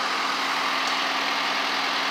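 Diesel engine of a John Deere backhoe loader idling steadily.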